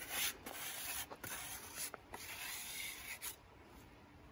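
Scratchy rubbing and rustling sounds in several short strokes, from hands handling weathered wood or from clothing.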